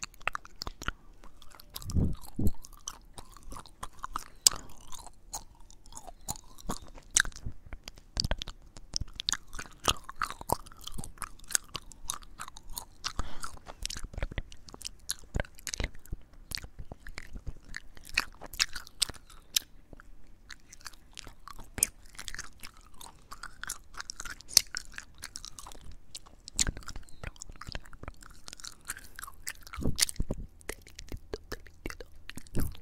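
Close-up gum chewing with wet mouth clicks and smacks, recorded with the recorder's microphone held right at the lips. It runs as a dense, irregular patter, with a few louder low thumps scattered through it.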